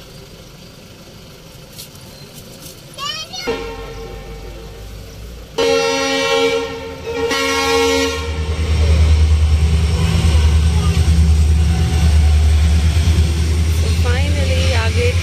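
A train horn blows, loudest in a long blast about five and a half seconds in with a shorter one just after, then the train passes close by with a loud, steady low rumble.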